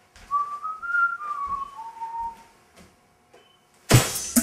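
A person whistling a short phrase of a few notes for about two seconds, the pitch climbing and then sliding down.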